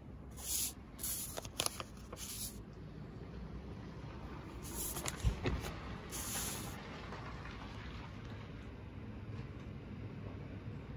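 Paper brochure pages being handled and turned: several short rustles and slides of paper, with a few light clicks and a soft thump about five seconds in.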